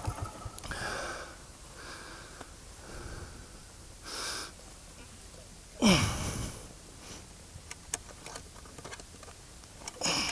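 A motorcycle rider breathing hard after dropping his Royal Enfield Himalayan in sand, short heavy breaths about once a second. About six seconds in comes one loud grunt, falling in pitch, as he strains to lift the heavy bike upright.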